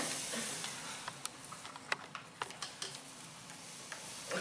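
A wooden turntable under a game board spins with a soft whir that fades over the first second. Then come several light clicks as plastic pawns are tapped across the board.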